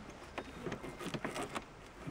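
Fabric being handled and pressed by hand onto the inside edge of a car's open tailgate: an irregular patter of soft rustles and small clicks.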